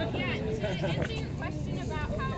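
Indistinct voices of people talking among a gathered crowd, over a steady low rumble of background noise.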